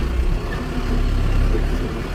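Tractor engine running steadily, heard from inside the cab, as the tractor pushes through a tall sorghum crop.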